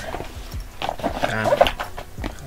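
A man's wordless vocal sound with wavering pitch, loudest about a second in, as he reacts to his chips being all gone.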